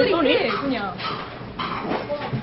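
A woman's high voice swinging up and down in pitch without clear words, a whiny, playful vocalizing, strongest in the first second.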